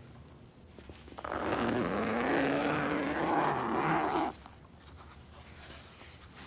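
Zipper of a body bag pulled open in one long rasp of about three seconds, starting about a second in and stopping suddenly.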